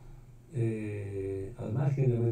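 A man's voice holding a drawn-out, level-pitched 'ehhh' hesitation sound for about a second, starting about half a second in, before ordinary speech begins near the end.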